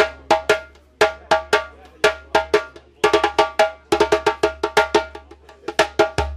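Djembe played with bare hands: a repeating accompaniment rhythm of sharp, ringing slaps and tones, with a quicker run of strokes in the middle.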